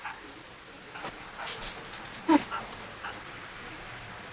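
Several short, high animal whimpers. The loudest comes a little past halfway.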